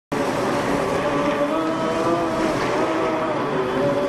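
Stormy-sea sound effect: a steady rush of waves and wind, with long held notes wavering slowly over it.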